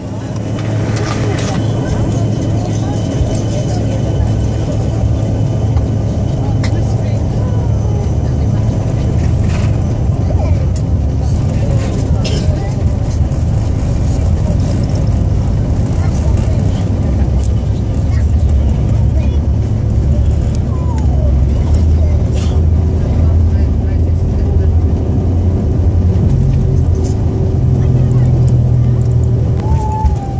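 Jet airliner engines heard from inside the passenger cabin during the takeoff roll: a loud, steady rumble that jumps up in level right at the start as thrust comes on, with the rumble of the wheels on the runway.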